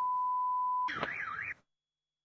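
Car alarm cycling through its tones: a steady high beep for about a second, then a quick warbling tone, before the sound cuts off suddenly.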